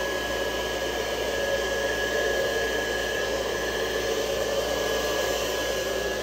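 Handheld electric hot-air blower running steadily, blowing wet acrylic pour paint across the surface: a constant rush of air with a thin, steady high whine.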